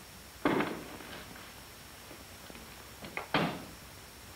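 Rear door of a Chevrolet sedan being worked: a sharp knock about half a second in, then a few small latch clicks and a firm clunk as the door is shut, a little over three seconds in.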